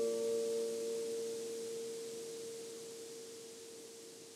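The last chord of an acoustic guitar ringing out and slowly fading. The higher notes die away within the first second, leaving one note sounding on alone, growing fainter.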